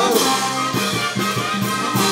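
Brass band playing: trumpets and trombones carrying a melody over bass drum and snare drums keeping a steady beat.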